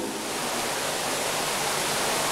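Steady hiss, even and without any tone or rhythm, growing slightly louder toward the end.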